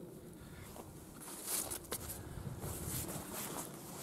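Rustling and brushing of clothing as a wool poncho is pulled into place and adjusted, with a few short scuffs and soft clicks, busiest from about a second in.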